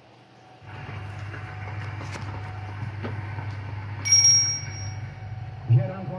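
A single bright, high bell ding about four seconds in, ringing for about a second over a steady low hum: the notification-bell sound effect of a YouTube subscribe-button animation.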